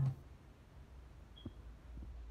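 Quiet room tone with a steady low hum, after a voice trails off at the very start; one faint click about one and a half seconds in.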